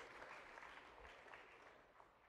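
Near silence: faint crowd noise from the congregation, an even haze that fades away just before the end.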